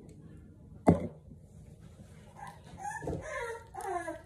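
A sharp knock about a second in, then a four-week-old bully puppy crying in several high, wavering whines as it is dosed with dewormer from an oral syringe.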